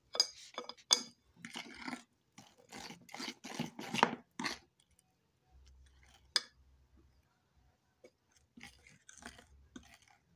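A metal utensil stirring thick banana oatmeal pancake batter in a bowl, making irregular wet scrapes and clinks against the bowl. The strokes come thick and fast for the first four seconds or so, thin out after that with one sharp clink a little after six seconds, then pick up again near the end.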